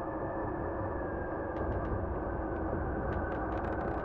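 A steady, muffled low rumble of ambience, with a few faint ticks scattered through it, more of them near the end.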